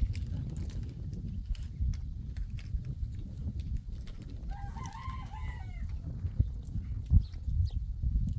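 A rooster crowing once, about halfway through, over a steady low rumble.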